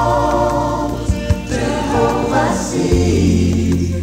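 Gospel music with a choir singing in harmony over sustained deep bass notes and a few drum beats.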